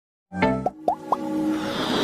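Animated logo-intro music and sound effects: a synth chord comes in about a third of a second in, then three short rising pops about a quarter second apart, followed by a swelling whoosh that builds to the end.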